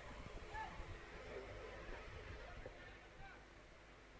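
Faint background voices from the ground, falling away toward the end.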